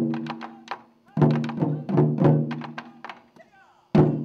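Japanese taiko drums (wadaiko) struck with wooden sticks in a lively, uneven pattern: a loud hit, a quick flurry of lighter strokes, then a run of strong hits from about a second in, each stroke leaving a deep ringing boom. Another loud hit lands at the very end.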